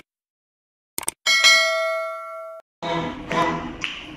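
A subscribe-button animation sound effect: two quick mouse clicks, then a notification-bell ding that rings for over a second and cuts off abruptly. Music starts shortly before the end.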